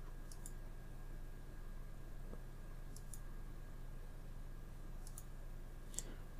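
Computer mouse button clicking faintly three times, a few seconds apart, each click a quick press-and-release pair, over a low steady electrical hum.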